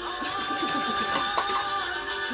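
Music from a television broadcast playing through the TV's speakers, several held tones with wavering lower notes and a sharp click about one and a half seconds in.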